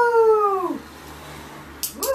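A woman's high, drawn-out call of praise to a dog, falling in pitch at its end, then a single sharp click near the end.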